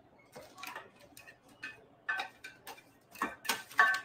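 Cooked red potato pieces tipped and scraped out of a glass baking dish with a utensil, dropping into a foil-lined pan: a string of irregular clicks and knocks that grows busier and louder near the end.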